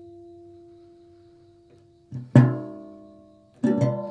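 Sparse solo guitar improvisation. A single held note fades away over about two seconds. A soft plucked note and then a harder, ringing pluck follow, and a quick cluster of plucked strokes comes near the end.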